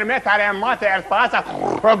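A man singing a folk song unaccompanied, holding long notes with a strong wavering vibrato, with a rough growling note about one and a half seconds in.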